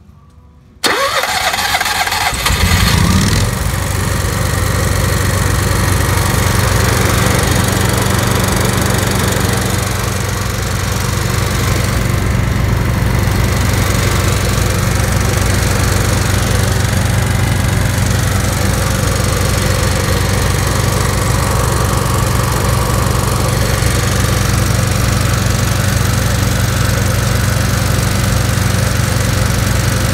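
Cummins Onan QG 6500 propane RV generator being started with its electric starter: about a second and a half of cranking, the engine catches about two seconds in and flares briefly, then settles into a steady, even run for the rest of the time.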